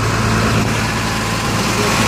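A truck engine running steadily at idle, a constant low hum.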